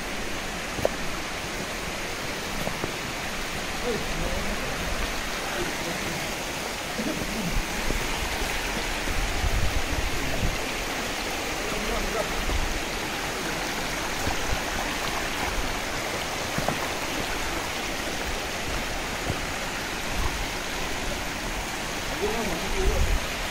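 Shallow rocky stream running over stones: a steady rush of water, with a few low thumps.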